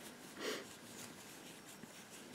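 Quiet room with one short, soft breath through the nose about half a second in.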